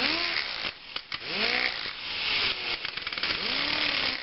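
Handheld rotary tool with a cutoff wheel grinding into a screw held in a vise, scoring a mark where it is to be cut off. The motor's pitch sags and recovers several times as the wheel bites and is eased off, over a hissing grind.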